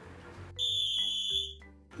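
Electronic editing sound effect: a steady high-pitched tone held for about a second with a few low notes under it, cutting off abruptly.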